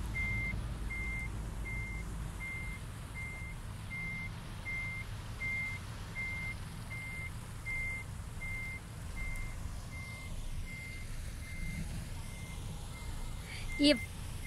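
Vehicle reversing alarm beeping steadily at one pitch, a little over two beeps a second, over a low engine rumble that fades after the first few seconds.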